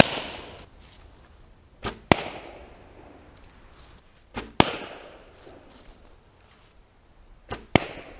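Four quick shots from a primitive bow: each a bowstring release followed about a quarter second later by a loud, sharp pop with a ringing tail as the arrow bursts a balloon in flight.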